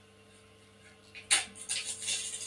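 Faint steady electrical hum, then a little over a second in a sudden loud crackle followed by continuing rustling and scraping: handling noise from someone moving right up against a microphone.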